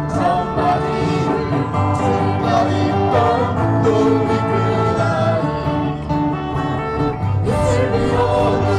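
Live acoustic folk band: strummed acoustic guitars over a bass guitar, with voices singing.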